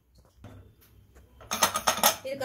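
Aluminium pressure cooker being handled at its lid and whistle weight: a few faint ticks, then a quick run of sharp metal clicks and rattles near the end.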